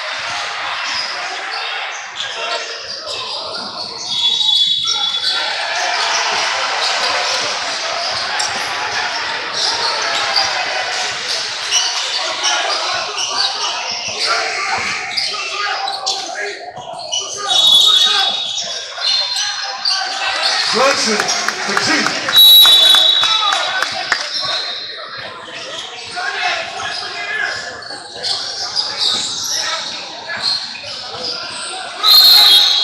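Basketball game sounds in a large gym: a ball bouncing on the hardwood court amid the voices of players and spectators, echoing in the hall. A few brief shrill high tones cut through, the loudest about 22 seconds in.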